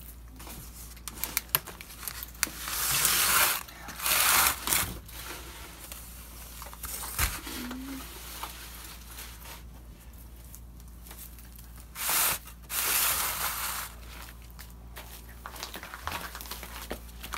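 Rustling and scraping handling noise from plastic seedling trays being carried and set down, in a few bursts of about a second each.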